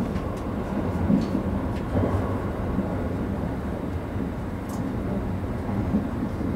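Kintetsu 50000-series Shimakaze limited express running at speed, heard from inside its front car: a steady low rumble of wheels on track with a few faint clicks.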